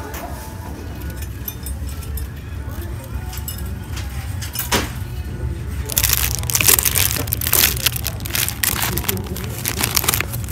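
Cellophane-wrapped packs of cards crinkling and knocking against each other as a hand flips through them, a dense run of crackles in the second half, with a single sharp click a little before the middle.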